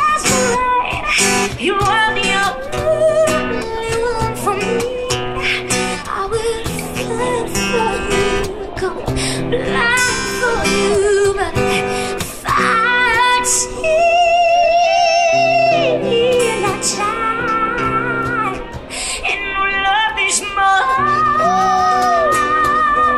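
A woman singing a slow pop-country song live, strumming an acoustic guitar, with cajon percussion keeping the beat. She holds long notes with vibrato in the middle and again near the end.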